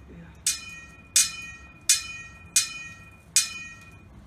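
Five metallic clangs in a steady rhythm, about 0.7 s apart, each ringing on with the same clear tone as it fades: a clashing sword-fight sound effect.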